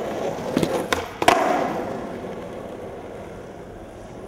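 Skateboard wheels rolling on asphalt, with a few sharp clacks of the board as a trick is done and landed about a second in, the loudest just after. The rolling then slowly fades as the board goes away.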